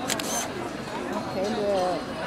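A camera shutter clicks twice in quick succession at the very start, followed by people's voices talking from about a second in.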